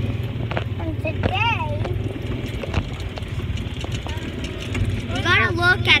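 Small engine running steadily with a low, rapidly pulsing hum, as from a golf cart at rest.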